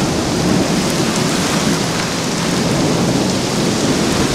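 Heavy rain pouring down steadily in a severe thunderstorm, an even, unbroken noise with no single claps standing out.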